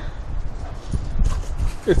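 Wind buffeting the microphone, a low rumble, with a short rising whine just before the end.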